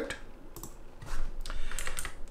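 Computer keyboard keys being tapped: a handful of short, separate keystroke clicks, more of them in the second half.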